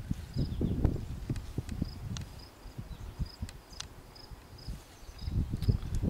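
Crickets chirping steadily in short repeated pulses. Low rumbling comes and goes over them, strongest in the first two seconds and again near the end, with a few sharp clicks.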